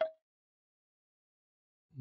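Near silence: the soundtrack drops out completely, with no sound of the egg striking his head.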